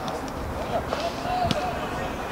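A single sharp thud of a football being kicked about one and a half seconds in, over faint distant shouts from players.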